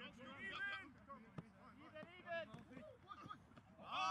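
Faint voices of several rugby players calling out and talking on the field, overlapping one another, with a single short click about a second and a half in.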